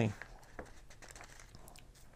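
Faint rustling of thin Bible pages being handled and turned, with a few soft clicks, in a quiet small room.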